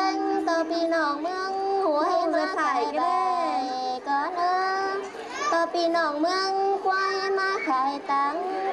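A woman singing a Thái folk song (khắp) in a high voice, holding long notes with sliding ornaments, with short breaks between phrases.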